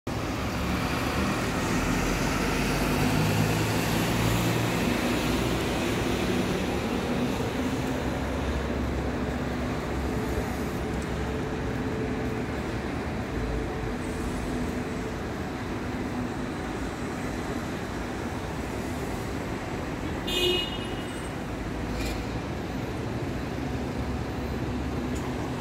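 Steady city street traffic noise, a hum of passing vehicles that is somewhat louder in the first few seconds. About twenty seconds in there is one brief high-pitched beep.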